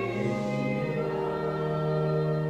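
A congregation singing a hymn together in Hungarian at a slow pace on long held notes, moving to a new note about a second in and holding it.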